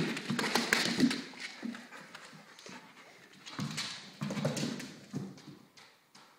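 Belgian Malinois's claws clicking and scrabbling on a slick tile floor as the dog runs after a ball, in two quick bursts, the second about three and a half seconds in.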